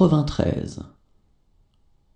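A voice reading a French number aloud for about the first second, then only a faint low background.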